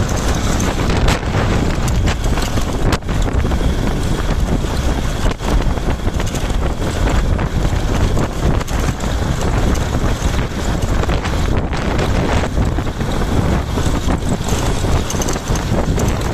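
Loud, steady wind rumble on the microphone of a moving vehicle, most likely a motorcycle, riding along a dirt road.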